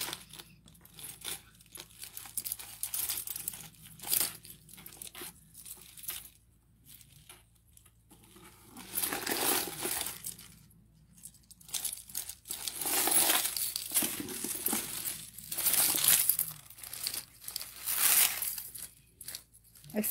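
Tangled necklaces being handled and pulled apart: irregular rustling and crinkling with scattered small clicks. It comes in bursts that get louder in the second half.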